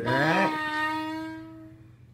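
Blues harmonica note, bent and sliding back up to pitch, then held steady and fading out after about a second and a half.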